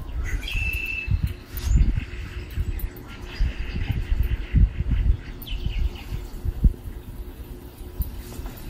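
Hot tub circulation pump starting back up after the salt cell cartridge change: a steady motor hum with irregular low gurgling surges of water. A short high chirp sounds about half a second in.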